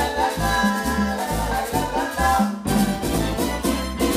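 A live salsa orchestra playing: a repeating bass line and conga-driven percussion under saxophone and horns, at a steady dance tempo.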